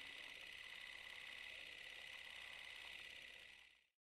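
Faint steady hiss, highest around the upper middle of the range, with a few light crackles, fading out just before the end.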